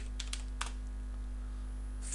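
Computer keyboard typing: a quick run of about five keystrokes that stops within the first second, over a steady low hum.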